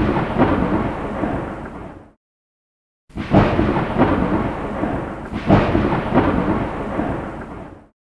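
Thunder sound effect: three rolls of thunder, each starting suddenly and dying away over about two seconds, with a second of silence after the first and the last two running into each other.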